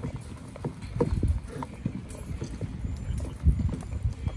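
A spatula stirring thick, foamy puffy paint (shaving cream mixed with school glue) in a plastic bowl, with irregular low knocks and bumps as the bowl shifts on the table; the loudest knocks come about a second in and again near the end.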